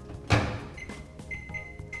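Microwave oven: a thump from the door or panel about a third of a second in, then a steady high electronic beep as it is set running, strongest for most of the last second.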